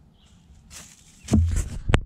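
Faint bird chirps, then rustling and loud close bumps and rubbing of clothing and hands against the camera microphone as the camera is picked up, with the sharpest bump at the very end.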